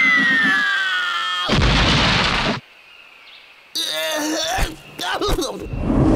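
Cartoon sound effects of a fall and crash: a whistle sliding steadily down in pitch, then a loud explosion-like crash of impact about a second and a half in. After a short lull come a brief wavering sound and a click.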